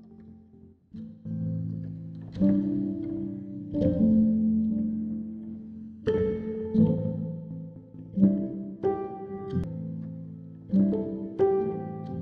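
Mutable Instruments Beads granular texture synthesizer processing a sample from a Make Noise Morphagene, with its grains set to random. Pitched notes start suddenly at uneven intervals and ring on, overlapping into a shifting chord.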